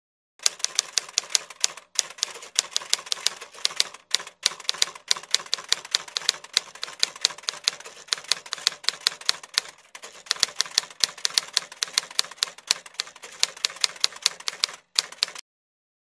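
Typewriter typing sound effect: a fast, even run of keystroke clacks, about four a second, with a few brief pauses. It starts just under half a second in and stops about a second before the end.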